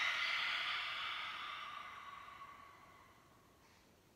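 A woman's long open-mouthed exhale, a breathy sigh that fades away over about three seconds.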